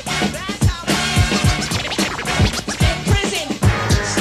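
Hip hop track: a drum beat with deep falling bass thumps and turntable scratching, the scratches thickest in the first second.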